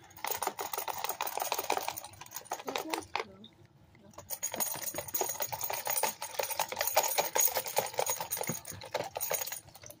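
Gravel and paydirt rattling in a plastic gold pan of water as the pan is shaken and swirled: a dense run of small clicks that stops for about a second around three seconds in, then starts again.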